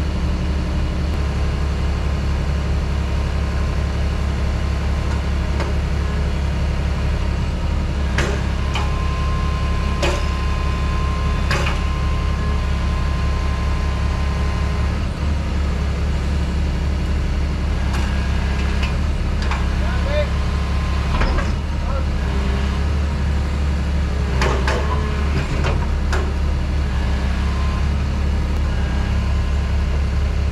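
Excavator diesel engine running steadily under load while its arm lifts a heavy steel pontoon on chains, with scattered metal clanks and a brief high whine about ten seconds in.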